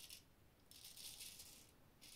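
Faint rasping strokes of a freshly honed Filarmonica straight razor cutting stubble: a short stroke at the start, a longer one of about a second from just under a second in, and another starting at the end. The edge is cutting smoothly.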